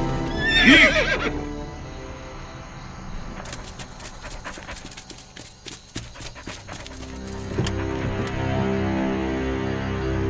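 A horse whinnies in the first second, then hooves clop on the ground for a few seconds, over film background music that grows louder near the end.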